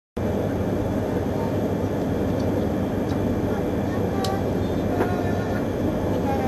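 Steady hum and hiss inside a stationary E3-series Komachi Shinkansen passenger car, the train's onboard equipment running while it stands still.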